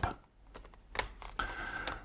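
A few light clicks about a second in, followed by a faint steady tone through the last half-second.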